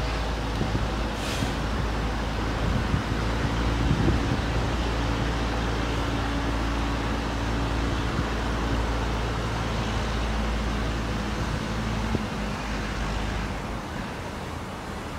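Steady low rumble of road traffic with a faint hum in it, picked up outdoors, with no distinct sudden sounds standing out.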